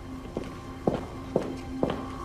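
Footsteps on a hard floor: four even, unhurried steps about half a second apart, over a steady droning music bed.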